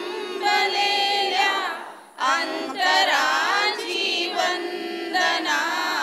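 A group of voices, mostly women's, singing a song together in sustained melodic phrases, with a short breath break about two seconds in.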